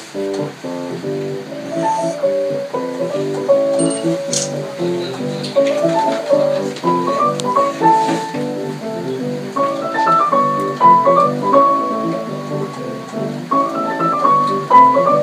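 Upright piano played four hands in a jazz style: short repeated chords under a melody line that climbs higher in the second half.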